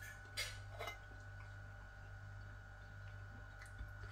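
Metal fork clicking against a dinner plate twice, then once more lightly near the end, all faint over a steady low hum.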